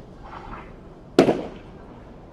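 A single sharp, loud crack a little over a second in, with a brief ringing tail: a padel ball striking hard close to the microphone, such as against the court's glass wall.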